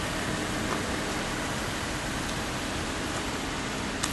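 Steady, even background noise, a constant hiss with no distinct events.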